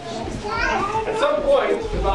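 Voices in a room: speech, with a child's voice mixed in.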